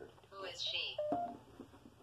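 A spirit-box style ghost-hunting app on a phone putting out about a second of garbled, voice-like sound with hiss, ending in a brief steady electronic tone.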